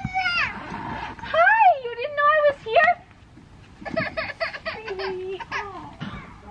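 A toddler crying in high, rising and falling wails in several bursts, upset after falling hard on the pavement.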